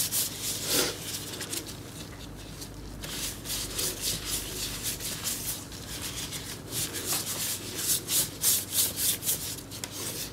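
Gloved hand wiping a wooden tabletop with a white cloth in repeated rubbing strokes, which come more steadily and louder near the end.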